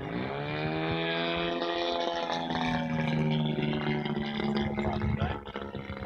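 Engine of a radio-controlled Yak-54 aerobatic model airplane in flight overhead. It drones steadily after its note drops in pitch over the first half second.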